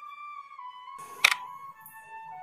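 Soft background flute melody holding slow, long notes, with a single sharp click sound effect a little past a second in, the kind that goes with an animated subscribe button being clicked.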